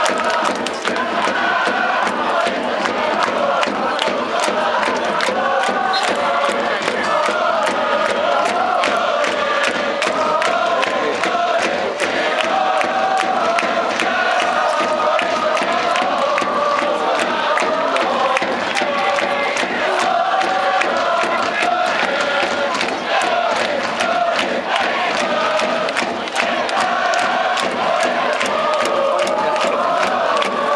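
Football supporters chanting a song in unison, many voices together over a steady beat, held up without a break.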